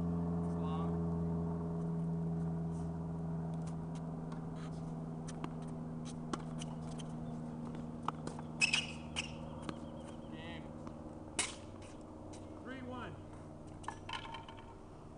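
Sharp hits of a tennis racket on the ball on an outdoor hard court, the two loudest in the second half, over a steady low hum that grows fainter. A short voice sound comes near the end.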